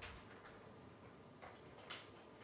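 Near silence: room tone in a lecture hall, with a faint tick shortly before the end.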